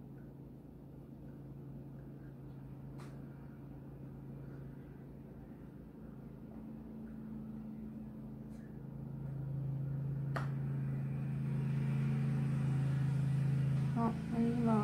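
A steady low mechanical hum, as of a motor or appliance running, that grows clearly louder about nine seconds in, with a few faint clicks.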